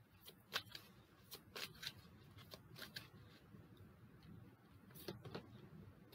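Faint shuffling of an angel oracle card deck: a few soft, irregular card clicks and flicks over quiet room tone.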